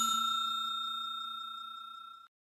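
A bell chime sound effect ringing out and fading away evenly, with a faint rapid tremble, dying out at the end.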